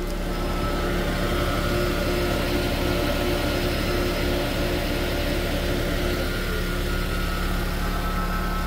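2012 Toyota Prius hybrid idling at a standstill, heard from beneath the car: a steady hum with a few faint steady whine tones over it.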